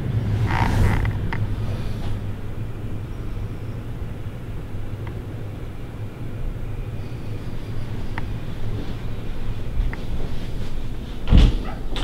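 Steady low hum in an empty room, with a few faint clicks along the way. About a second before the end comes a short, louder noise as the bedroom closet door is opened.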